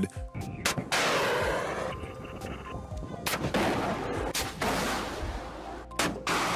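Shoulder-fired FIM-92 Stinger missiles launching: several sudden blasts, each trailing off in a long rushing hiss, a second or two apart.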